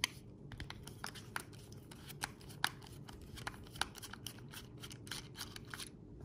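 Small irregular clicks and ticks of a screwdriver turning a T10 Torx screw out of a knife's aluminium handle scale, metal bit working in the screw head.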